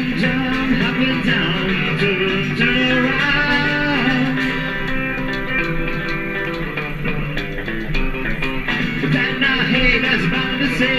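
Live rockabilly band playing an instrumental stretch between vocal lines: electric lead guitar over acoustic rhythm guitar and upright double bass.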